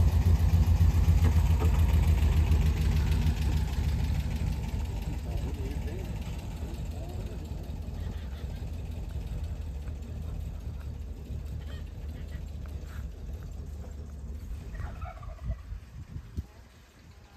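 Volkswagen Kombi van engine running as the van pulls away and drives off down a dirt slope, loud at first and fading steadily as it goes.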